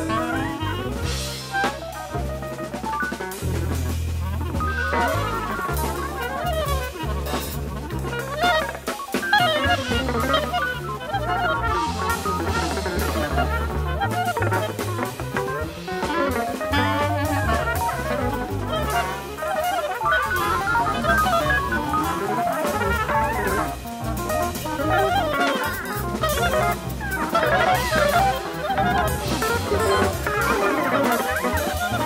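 Jazz recording from 1974 with a drum kit, bass and fast, winding melodic runs over them.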